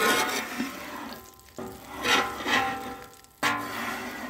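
Griddle scraper pushed across the oily steel top of a warm flat-top griddle in three strokes, each starting suddenly and fading, scraping the grease toward the grease trap.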